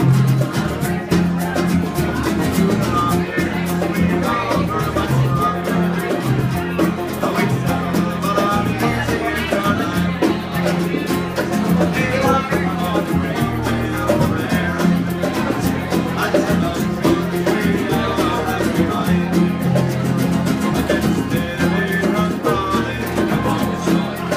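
Acoustic guitars and other plucked strings strumming together in a traditional Irish folk session, playing an instrumental passage of a ballad with a steady beat.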